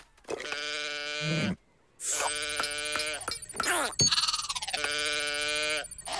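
A cartoon character's wordless vocal sounds: three long, wavering calls of about a second or more each, with a brief silence after the first.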